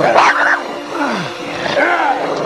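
An animal growling and roaring in loud calls that start suddenly and slide down in pitch.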